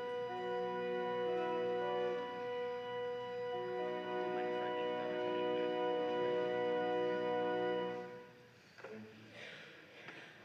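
Church organ playing slow, sustained chords that change every second or two, stopping about eight seconds in.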